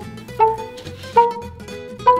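Background music of light plucked, pizzicato-style string notes, a new note sounding roughly every three quarters of a second.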